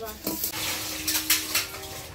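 Steel dishes clanking and a soot-blackened pot being scrubbed by hand, with a rough scraping sound in the first second and several sharp metal clinks.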